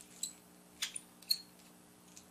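Three light plastic clicks from an erasable pen being handled and turned over in the fingers, about half a second apart.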